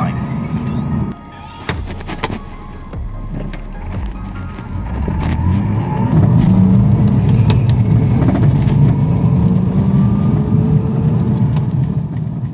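Manual-transmission BMW's engine heard from inside the cabin while accelerating toward freeway speed. Early on the sound dips with a few sharp clicks at a gear change, then a steady low engine drone builds and slowly rises in pitch.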